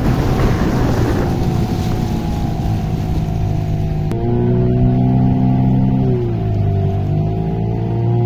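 Boat's outboard motor running under way, with water and wind noise at first; from about four seconds its drone holds steady, dipping in pitch and rising again around six to seven seconds as the throttle eases and opens.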